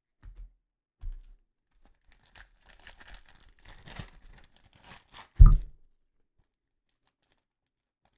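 Foil trading-card pack being torn open by hand and crinkling, with soft low thumps near the start and a sharper, louder low thump about five and a half seconds in.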